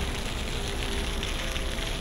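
Steady outdoor ambience of an open city square: an even hiss with a low rumble underneath and no distinct events.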